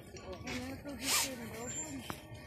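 People talking, with a short sharp hiss about a second in.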